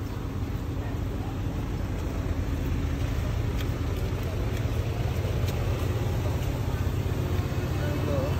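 Wind buffeting the phone's microphone, a steady low rumble that grows slightly louder, over street traffic.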